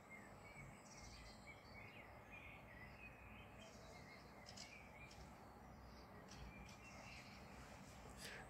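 Quiet outdoor ambience with faint, intermittent chirps of small birds over a low steady hum of background noise.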